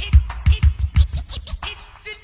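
A DJ scratching a record in quick short strokes over a hip hop beat with a heavy kick drum: a scratch break cued by the rapper's call to cut it.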